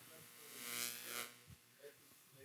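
A long breath out, close to a headset microphone, lasting about a second and rising and falling once.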